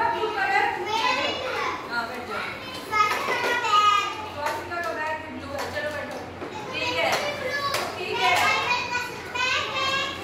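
Young children's voices talking and calling out, several at once.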